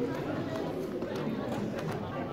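Many people talking at once in a large hall, with a few light clicks from a Megaminx puzzle (X-Man Galaxy v2) being turned in the hands.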